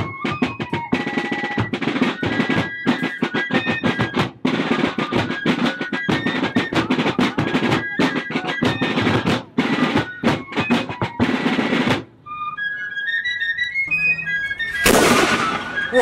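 Fife and drum corps playing a march: rapid snare-drum rolls and strokes under a high fife melody. The drums stop about 12 seconds in while a few fife notes carry on. Near the end comes a single loud blast of a black-powder field cannon.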